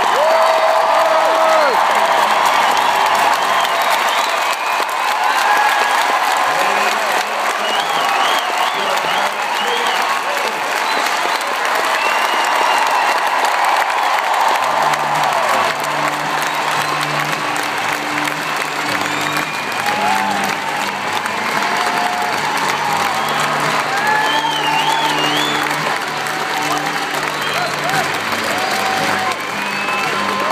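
Large stadium crowd applauding and cheering, with scattered shouts and whistles. About halfway through, music from the stadium loudspeakers comes in beneath the applause.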